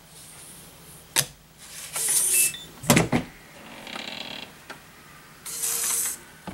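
Tactical Walls concealed rifle shelf opened with an RFID card: a light tap, a brief electronic beep, then a clunk as the lock releases and the hidden compartment swings open, with handling and rustling noise around it.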